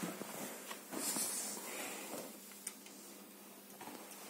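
Faint rustling and scraping of loose sand underfoot or under hand, loudest about a second in, with a couple of small clicks.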